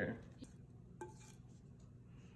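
Two faint light clicks, about half a second apart, from a wooden spoon against a glass mixing bowl as thick chocolate cake batter is scraped out into a cake pan; otherwise quiet.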